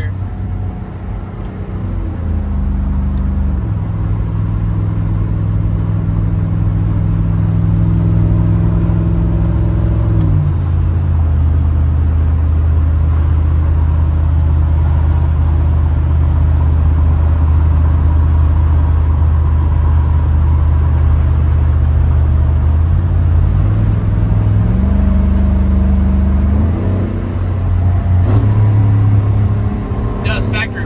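Supercharged LT5 V8 of a swapped 1993 Chevy pickup, heard from inside the cab, pulling steadily at highway speed. Its pitch steps down a couple of times in the first ten seconds, then steps back up twice near the end, as the ten-speed automatic changes gear.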